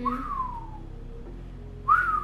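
A man whistling through pursed lips: two whistled notes, each rising briefly then gliding down in pitch. The first comes at the start, and the second, louder one begins near the end.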